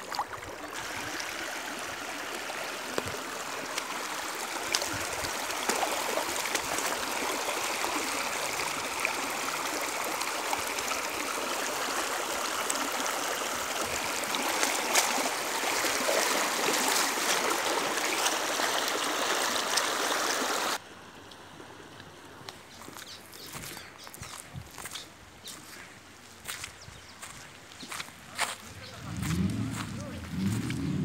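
Shallow stream rushing and babbling over stones and small rapids, a steady, even water sound. It stops abruptly about two-thirds of the way through, leaving a much quieter stretch with scattered clicks.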